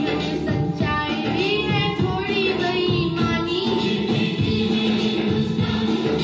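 A boy singing into a handheld microphone over recorded backing music. His voice drops out towards the end while the backing track continues.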